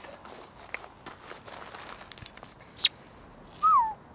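Soft steps and scuffing on gravelly ground, with a few light clicks. Near the end comes a short whistle-like tone that falls in pitch, the loudest sound here.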